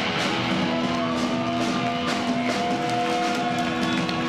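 Live rock band playing, with electric and acoustic guitars, bass guitar and a drum kit, at a steady loud level. A long held note rises slowly in pitch through the middle of the passage.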